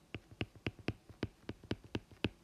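Stylus tip tapping on a tablet's glass screen during handwriting: a quick run of sharp taps, about four or five a second.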